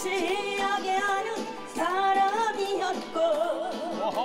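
A woman singing a Korean trot song into a microphone, in long held notes with a short break between phrases and a wavering vibrato near the end.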